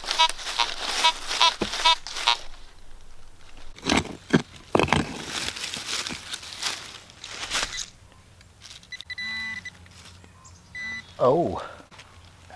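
Fisher F19 metal detector sounding a quick run of short beeps over a target, then a hand digger scraping and chopping into soil and dry leaf litter. A fainter wavering tone follows, and a brief voice comes near the end.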